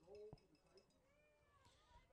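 Near silence, with a few faint, short gliding calls in the background.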